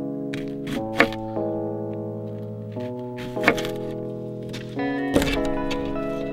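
Background music of sustained keyboard-like chords that change every second or two, over a few sharp knocks of a kitchen knife striking a wooden cutting board, the loudest about a second in.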